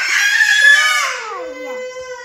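A young child's loud, high-pitched shriek that slides down in pitch after about a second and trails into a lower, steadier wail.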